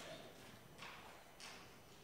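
Near silence: faint room tone with three soft, brief scuffs or knocks.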